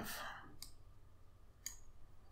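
Three faint, sharp clicks from a computer pointing device: one early and two close together near the end.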